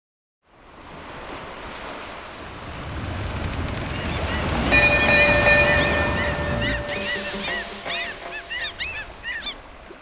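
Ocean surf swelling up over several seconds, joined about halfway through by a held chime-like tone, then a flurry of short rising-and-falling seabird cries as the surf dies away.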